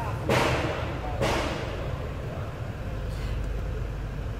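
Two brief brushing rustles from the microphone's foam cover being handled against the dashboard. They are followed by the steady low hum of a VW Golf's Climatronic climate-control unit running. There is no knocking: its hot/cold air flap mechanism has been cleaned and regreased, and the old hardened grease had made it rattle.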